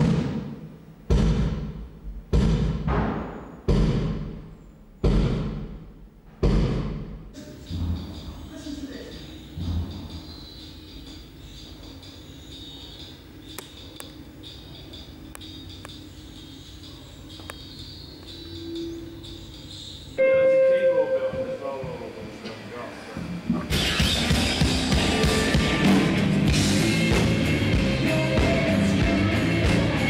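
Bass drum struck one hit at a time for a soundcheck, six strikes about one and a quarter seconds apart, each ringing out. A quieter stretch follows, then a held note, and near the end a rock band playing loudly.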